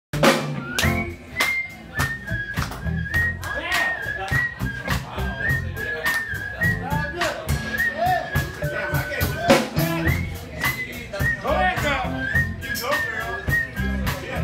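A woman whistling a blues melody into a microphone over a live blues band, with a steady drum beat, bass and electric guitar behind the whistle.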